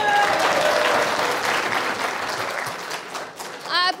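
Studio audience applauding, dying down near the end as someone starts to speak.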